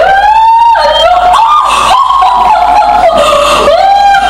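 A woman singing long, high held notes that slide from one pitch to the next.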